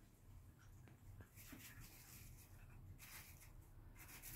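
Near silence: faint outdoor background with a low rumble and a couple of soft, hissy rustles.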